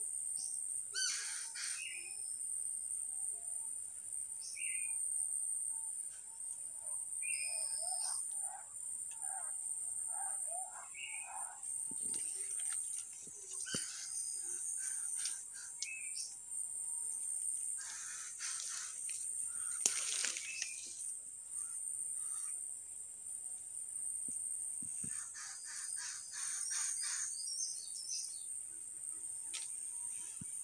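Several wild forest birds calling: short high whistles, a run of lower warbling notes, a dense burst of calls and a fast series of notes near the end, over a steady high-pitched whine.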